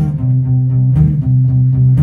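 Acoustic guitar playing alone: a low, steady, repeating figure of held bass notes with light picking strokes.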